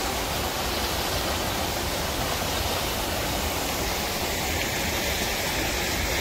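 Rifle Falls, three falls of water pouring down a cliff: a steady, even rush of falling water.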